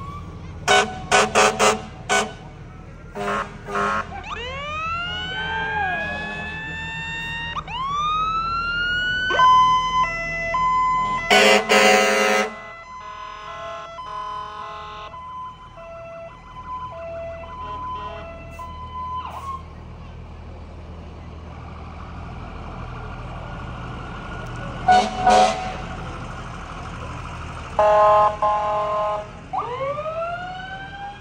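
Fire engines passing with their sirens going: several quick rising siren whoops, a stretch of siren stepping back and forth between two pitches, and repeated air horn blasts, the longest about eleven seconds in. A low engine rumble runs underneath.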